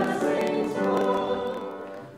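Slow church music with voices singing held chords, the phrase fading away near the end.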